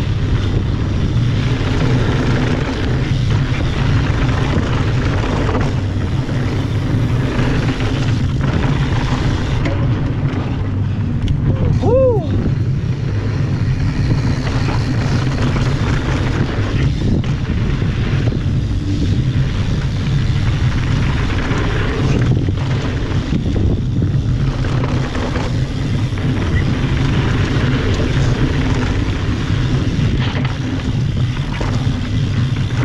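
Wind buffeting the camera microphone and mountain bike tyres rolling over a dirt trail on a fast descent, a steady rushing noise heaviest in the low end. About twelve seconds in, a short tone rises and falls.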